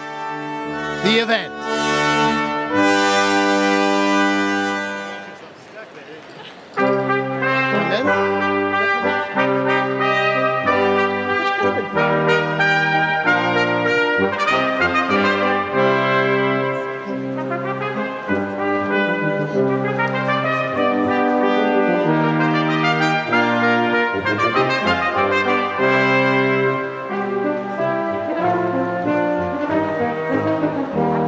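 Brass ensemble playing processional music in sustained chords. A held chord fades away about five seconds in, and the playing starts again with a new phrase about seven seconds in.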